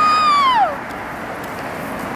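A woman's drawn-out, high-pitched wordless vocal cry, held level, then gliding down in pitch and stopping under a second in. After it comes the steady noise of road traffic.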